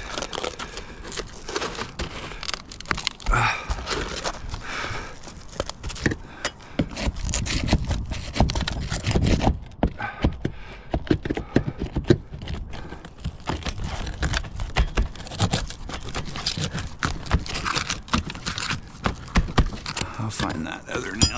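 Years of packed dirt and debris being scraped and pulled by gloved hands out of an old roof valley. It makes many irregular scrapes, crackles and rustles, busiest about halfway through.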